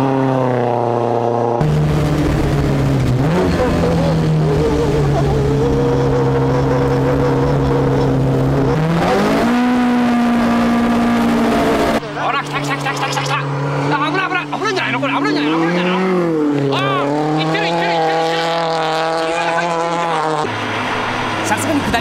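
Supercharged AE86 four-cylinder engine working hard, its note held high and fairly steady, then climbing sharply in pitch about nine seconds in. After an abrupt cut about twelve seconds in, the engine note wavers up and down.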